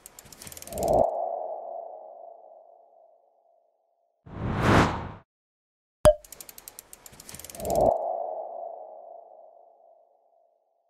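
Animated logo sting sound effects. Rapid ticking swells into a whoosh and a ringing tone that fades over about two seconds, and a short whoosh follows. About six seconds later a sharp click, the ticking and the same swelling tone repeat, fading near the end.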